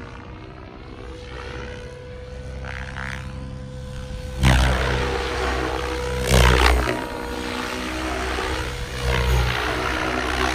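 SAB Goblin Black Thunder 700 electric RC helicopter flying aerobatics: a steady high whine from the drive under the sweeping whoosh of the main rotor. About halfway through, and twice more, the rotor noise surges loudly as the helicopter flips and pitches hard.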